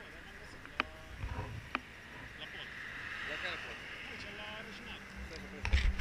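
Faint voices talking over quiet street ambience, with two sharp clicks in the first two seconds and a loud low thump near the end.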